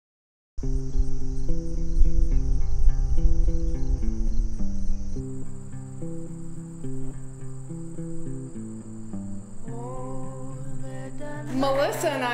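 Soft instrumental music starts about half a second in, after silence, with a steady high insect trill behind it. A voice begins near the end.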